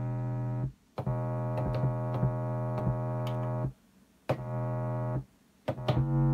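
Chopped sample of sustained keyboard chords triggered from an Akai MPC Renaissance's pads, each chop starting and cutting off abruptly. A short chord is followed by a long one held about three seconds, a brief stab with silent gaps around it, and quick short hits near the end.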